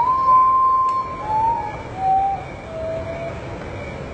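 Common potoo singing its mournful song: four whistled notes, each lower than the one before, the first held longest. A steady background hiss runs beneath.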